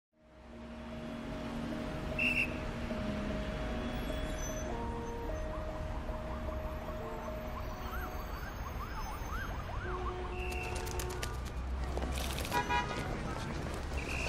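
Busy city street traffic: a steady rumble of vehicles with car horns sounding and a siren wailing in rising and falling sweeps.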